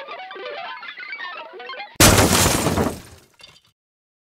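Video intro audio: about two seconds of quiet, guitar-like melodic music, then a sudden loud crash sound effect that fades away over about a second and a half.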